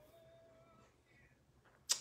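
Near silence: room tone with a few faint, thin steady tones, until a woman's voice starts loudly just before the end.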